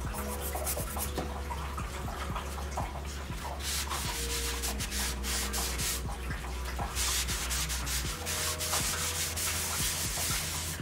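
Bristle brush scrubbing oil paint onto a stretched canvas in several scratchy strokes, the longest about two seconds, over a steady low hum.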